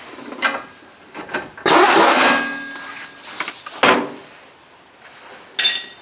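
Metal tools working on the strut-to-knuckle bolts of a front suspension: a loud burst of about a second from an air ratchet running a bolt in about two seconds in, then a few sharp metal knocks and a ringing clank near the end.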